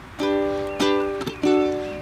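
Ukulele strummed: about four chords, each ringing on and fading before the next strum.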